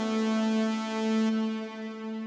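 A held synthesizer note from the u-he Zebra HZ software synth, played through its NuRev plate reverb: one steady pitch rich in overtones with a bright, airy top end that thins out about two-thirds of the way through.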